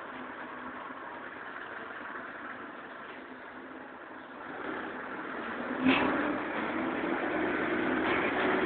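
Karosa Citybus 12M city bus heard from inside the passenger cabin: the engine runs low and steady, then grows louder about halfway through as the bus picks up speed. A single sharp knock comes about six seconds in, and the engine note rises slowly after it.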